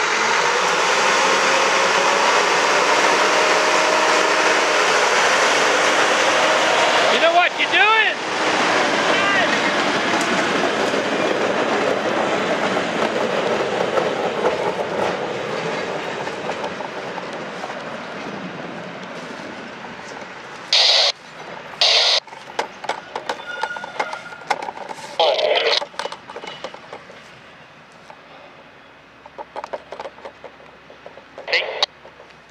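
Brandt road-rail truck's diesel engine working as it moves a cut of gondola cars along the track, their steel wheels rolling on the rails. The sound is loud at first and fades steadily over the second half as the cars move away, with a few short sharp bursts near the end.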